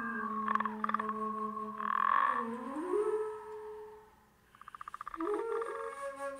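Keyboard and flute improvisation of animal-like sounds: a low tone slides down, holds, and rises again, under short croaking pulsed bursts. A dip in loudness is followed by a fast rattling trill near the end.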